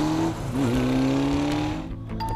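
Motorcycle engine accelerating away. Its note rises, dips briefly about half a second in as it shifts gear, then rises again before it cuts off near the end.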